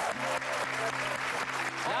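Studio audience applauding, a dense patter of many hands clapping that gives way to a man's voice just at the end.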